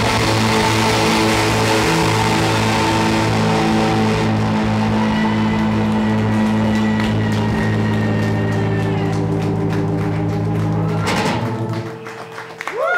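Live rock band playing long, held droning chords on keyboards and guitars over a steady low bass. About eleven seconds in a final loud stroke ends the song and the sound dies away.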